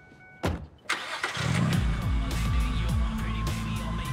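A car door slams shut about half a second in. The car's engine then starts, and loud music with a heavy, sliding bass comes up and keeps playing.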